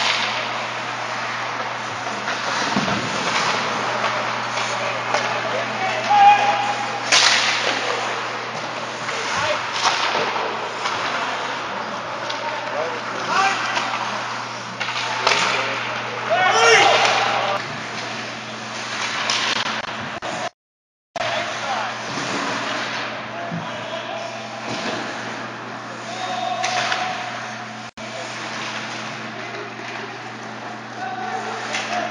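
Ice hockey scrimmage: skates scraping the ice and sticks and puck clacking, with sharp knocks every few seconds and indistinct shouts from players, over a steady low hum.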